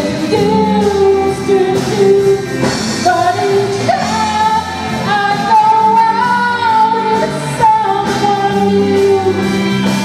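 A woman singing lead, holding long sung notes, backed by a live amplified rock band with electric guitars, bass, drums and keyboard.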